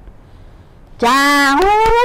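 Only speech: after about a second of quiet room tone, a woman says a long, drawn-out "chaa" (Khmer "yes"), its pitch stepping up partway through.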